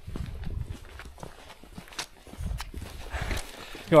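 Footsteps of a person moving quickly along a rocky dirt trail: a run of irregular low thuds with small clicks.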